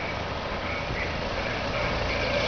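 Police motorcycles riding slowly past, engines running steadily under a constant outdoor background hiss.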